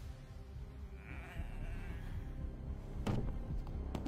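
Film soundtrack of low, dark music running steadily, with a brief wavering, bleat-like sound about a second in and a quick swish about three seconds in.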